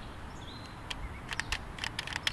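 Several sharp plastic clicks in quick succession, starting about a second in, from a toy blaster being cocked and triggered without firing.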